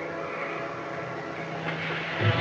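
Suspense background music holding a steady, sustained chord.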